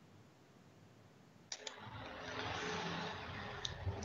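Dead silence, then about one and a half seconds in a click and a faint steady hiss of room noise on a computer microphone, with another small click near the end.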